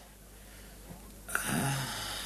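Quiet room tone, then about a second and a half in a man's low, breathy sound through the nose, a short nasal exhale with a hum in it.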